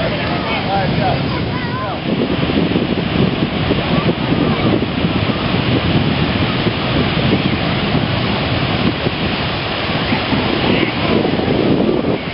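Ocean surf breaking and washing up a shallow beach, with wind buffeting the microphone. A few high, bending calls sound faintly in the first second or two.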